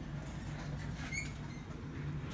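A short, rising high-pitched squeak about a second in, over a steady low hum.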